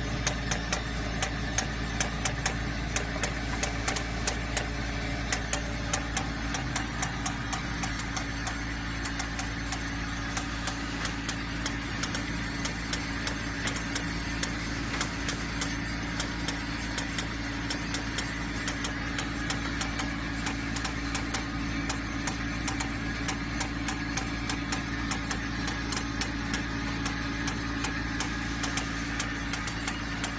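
Optical O-ring sorting machine running: a steady motor hum with rapid, irregular sharp clicks, a few a second.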